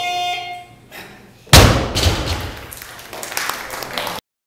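A steady electronic beep lasting just under a second, then, about a second and a half in, a loaded Olympic barbell dropped onto the lifting platform: a loud thud followed by smaller knocks and clatter as the plates settle.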